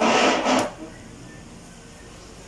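A man's short breathy laugh: a burst of exhaled air in the first half-second, then quiet room tone.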